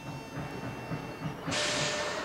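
Steam locomotive sound effect: the engine chugging low, then a sudden loud hiss of steam about one and a half seconds in.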